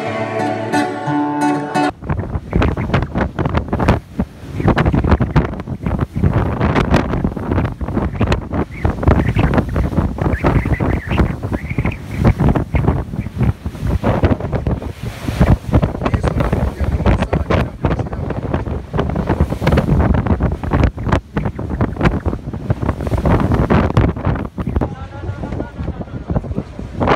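Wind buffeting the microphone aboard a boat at sea, in gusts, with the sea's waves under it. The first two seconds are the tail of a music track, cut off suddenly.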